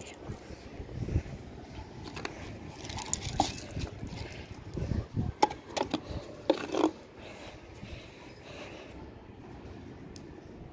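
A handful of light clicks and knocks from bowls being handled and set down on a concrete ledge, scattered through the first seven seconds.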